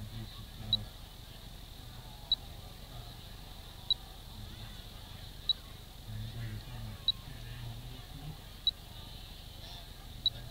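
A small electronic beeper on the rocket gives a short, high beep about every 1.6 seconds, six times, over a low murmur of faint distant voices.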